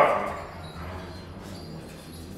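A single short dog bark right at the start, dying away within half a second, then a low steady hum.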